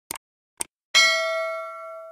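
Two short clicks, then a bright bell ding that rings on and slowly fades for about a second: the sound effect of a subscribe-and-notification-bell animation.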